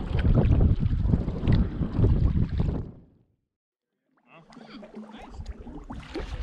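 Wind rumbling on the microphone and water sloshing as a canoe is paddled across a lake; the sound cuts off suddenly about three seconds in, and after about a second of dead silence a quieter wash of water returns with faint voices.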